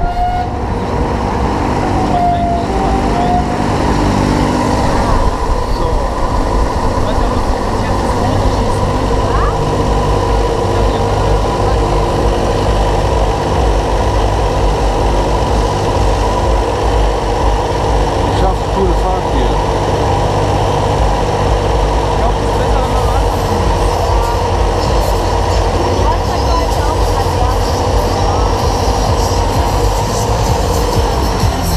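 Mondial Turbine thrill ride's drive running as its arm lowers the gondola from the top back down to the loading platform: a steady mechanical hum with several held tones, over a heavy low rumble of wind on the microphone.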